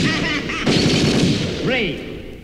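Old-school hardcore techno DJ mix: a loud, dense burst of rapid-fire, gunfire-like hits that breaks off briefly under a second in and resumes, then a pitched sound that bends up and down near the end.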